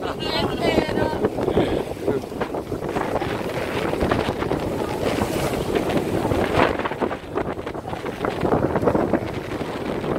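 Wind buffeting the microphone over the rush of water along the hull of a sailboat sailing close-hauled.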